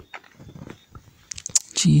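A pause in spoken prayer holding a few short, sharp clicks, then a voice says "Jesus" near the end.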